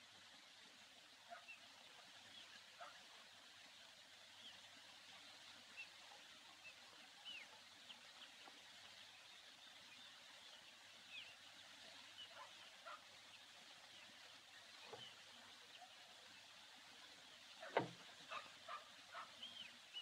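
Near silence with faint, scattered bird chirps. Near the end there is a single knock and then a few light clicks.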